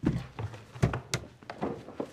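A few wooden knocks and thuds as wooden gift chests are set down and shifted, with one sharper click a little past the middle.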